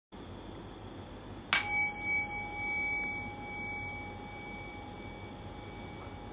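A meditation bell struck once about a second and a half in, its clear ringing tones fading slowly over several seconds, sounding the start of the meditation. A faint steady hiss lies underneath.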